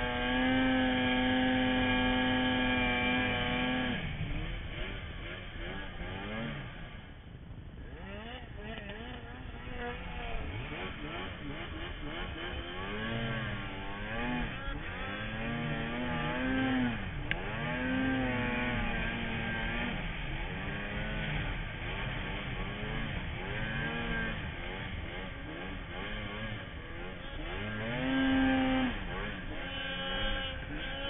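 Snowmobile engine held at high revs for the first few seconds, then revving up and down over and over, its pitch rising and falling with each burst of throttle as the sled works through deep snow.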